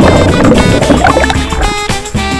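Background music with plucked, guitar-like notes over a rush of churning water from a person plunging into the pool, which fades after about the first second.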